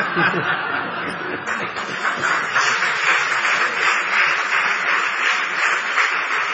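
Audience laughing at a joke: a long, sustained crowd laugh that fills out and grows denser about a second and a half in.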